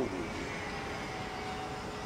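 Steady distant vehicle hum of an urban outdoor background, with a faint tone slowly falling in pitch.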